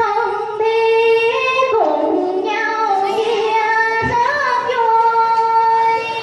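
A woman singing a Vietnamese song into a microphone in long held notes that slide from one pitch to the next.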